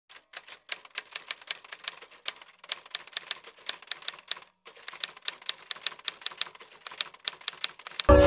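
Typewriter key-strike sound effect, a quick run of sharp clicks at about five a second with one brief pause about halfway through, keyed to title text typing itself out on screen.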